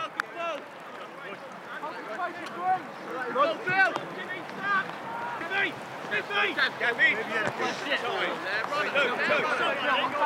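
Several players' voices calling and shouting across an open pitch, overlapping and growing busier from about halfway through.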